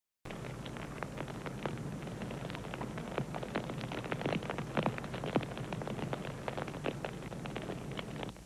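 Irregular crackling, several sharp clicks a second, over a steady low hum and hiss.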